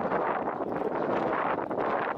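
Wind blowing across the microphone, a steady rushing noise.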